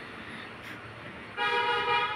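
A vehicle horn sounds once near the end, a steady half-second honk over faint street background.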